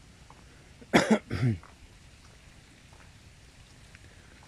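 A person coughing about a second in: a short cluster of two or three quick coughs, the last one trailing into a lower voiced sound.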